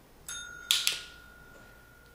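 A small tap dinner bell struck once by the cat, a bright ring whose tone lingers and fades slowly. About half a second later comes the quick double click of a handheld training clicker.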